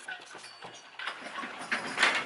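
Handling noise from a handheld camera: a few light clicks and knocks in a quiet space.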